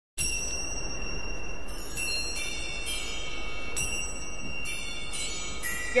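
Bell-like chime tones ringing out one after another at uneven intervals, a new note every half second to a second, over a steady hiss.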